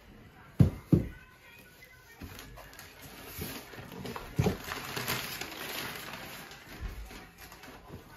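Cardboard boxes being handled: two sharp thumps about half a second and a second in, then continuous rustling and scraping of cardboard flaps and packing paper as a box is opened, with another knock midway.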